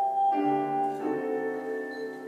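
Keyboard music, piano-like: held chords that change about once a second.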